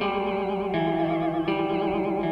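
Electric guitar played through an Old Blood Noise Reflector V3 chorus pedal in its Washed mode: a reverb feeds the chorus, giving little splashy echoes under sustained notes whose pitch wavers gently. New notes are struck about three-quarters of a second and a second and a half in.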